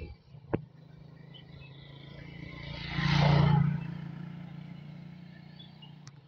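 A motor vehicle passing: its engine swells over a couple of seconds, is loudest near the middle, then fades away.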